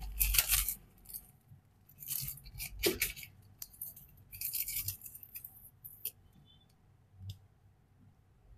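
Clear plastic shrink wrap and packaging crinkling in several short bursts as it is handled, with a few light clicks of hard plastic packaging.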